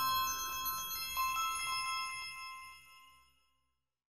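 Background music of bell-like chime notes, struck one after another and ringing on, fading out to silence about three and a half seconds in.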